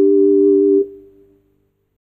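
A held chord of clean, steady organ-like keyboard tones that stops a little under a second in and dies away to silence.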